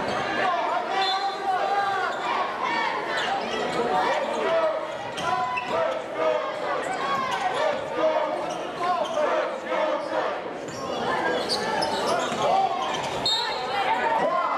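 Basketball bouncing on a hardwood gym floor as players dribble up the court, over the steady chatter of many spectators' voices echoing in the gym.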